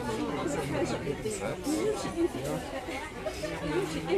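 Background chatter: several people talking at once in a room, with no single voice clear.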